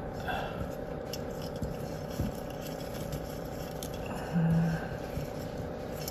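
Quiet handling sounds of thin wire being threaded through and around a terracotta pot's drainage hole: a few light clicks and scrapes. A brief hummed voice about four seconds in.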